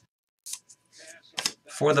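Trading cards and a plastic card sleeve being handled on a table: a few brief crisp rustles and a sharp click about one and a half seconds in, just before a man starts speaking.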